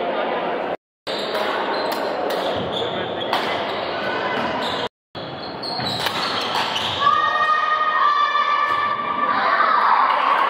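Badminton rally in a large, echoing hall: sharp racket-on-shuttlecock hits and footfalls on the wooden court, with voices in the background. The sound cuts out briefly twice, and from about seven seconds in a steady high tone holds for about two seconds.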